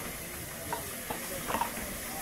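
Steam hissing steadily from beneath the cab of the LNER A4 Pacific locomotive 60009 'Union of South Africa' as it rolls slowly past, with a few light knocks in the middle.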